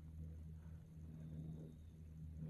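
Quiet room tone with a low steady hum, and faint soft pats of a makeup sponge being dabbed against the face.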